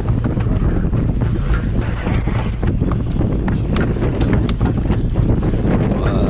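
Strong wind buffeting the microphone over the wash of choppy water around a small boat, with scattered short sharp ticks throughout.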